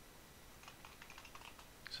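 Faint typing on a computer keyboard: a quick run of keystrokes in the second half, entering a short command.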